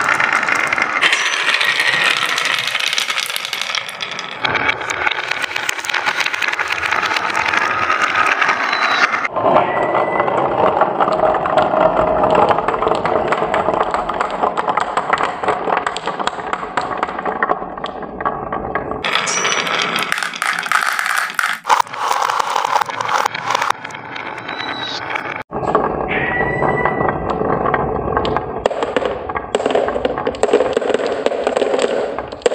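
Many marbles rolling down carved wavy grooves in a wooden track, a continuous dense clatter of clicks as they knock against each other and the wood. The sound changes abruptly several times.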